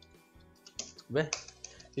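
Typing on a computer keyboard: a quick run of faint key clicks in the first second. About a second in, a short stretch of a man's voice comes in louder.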